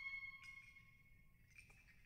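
Near silence: the last held flute notes of the soundtrack fade out early on, leaving only a few faint ticks.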